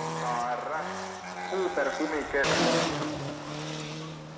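Rally car engine revving hard as the car drives through a gravel bend, its note climbing about a second in, with a loud burst of tyre and gravel noise around the middle.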